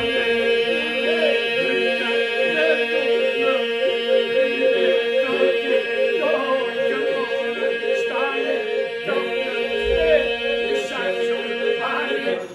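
Albanian Lab iso-polyphonic singing by a group of men, a cappella: a steady group drone (iso) held under solo voices that weave ornamented, wavering melodic lines above it.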